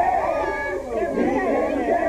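Several people's voices talking over one another in a room, with no single voice clear.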